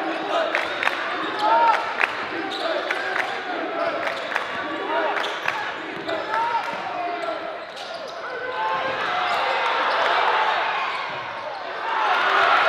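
Live gym sound of a basketball game: a basketball dribbled on the hardwood court and sneakers squeaking, over crowd voices. The crowd noise swells in the last few seconds as the play drives to the basket.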